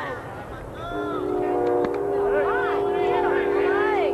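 A horn sounding one long steady blast of several tones held together as a chord, starting about a second in, with spectators' voices over it.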